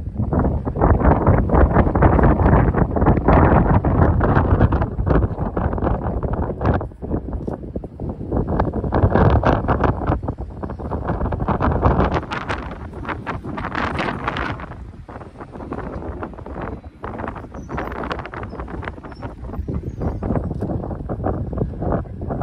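Wind buffeting the microphone: a loud, gusting rumble with frequent crackles, strongest in the first half, dipping briefly about seven seconds in and easing after about twelve seconds.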